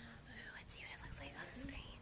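A woman's soft, whispered speech.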